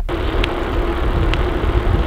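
Wind rumble on the camera microphone and tyre noise from a bicycle rolling slowly along a bumpy path, with a steady hum and two light ticks.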